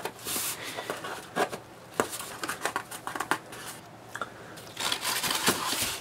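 Scissors cutting the strapping band on a cardboard shipping box, followed by cardboard and tape rustling and scraping as the box is handled, with a few sharp clicks.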